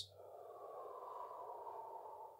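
A man's long, slow exhalation, releasing a held breath: a faint, steady rush of air.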